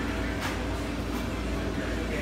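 Steady low hum and rumble of indoor room noise, with faint voices near the end.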